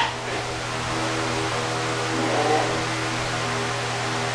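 Background music holding a steady, unchanging chord.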